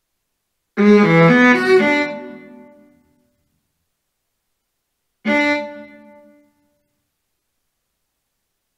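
Sampled viola playback from MuseScore 3: a quick figure of five eighth notes, ringing out for about two seconds. About four seconds later comes a single short viola note, the D4 being selected, which dies away over about a second.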